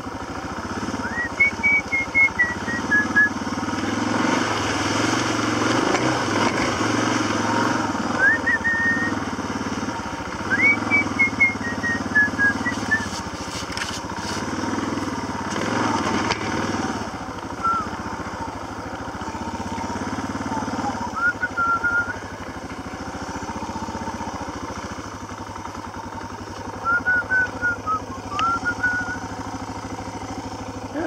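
Dual-sport motorcycle engine running as the bike is ridden slowly along a muddy trail, its revs rising and falling. Repeated short high-pitched chirps come in several bursts over the engine.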